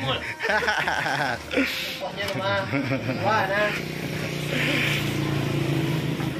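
Several people's voices, talking and laughing, over a steady low hum.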